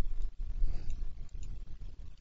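A low, uneven rumble on the recording, with no clear clicks.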